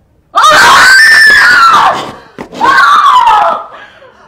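A woman wailing in anguish: two long, loud, high-pitched cries, the first starting suddenly and lasting about a second and a half, the second shorter.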